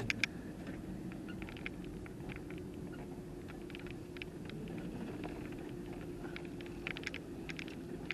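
A vehicle driving slowly on a gravel road, heard from inside the cabin: a steady low engine hum with scattered small ticks from the gravel under the tyres.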